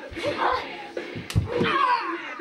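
A sharp smack of a body impact in a play-fight, with low thumps just before it, about two-thirds of the way in, followed by a voice.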